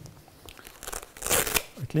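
A brief rustle and scrape of gloved hands handling cleaning materials on a table, with the loudest, sharpest scrape about a second and a half in.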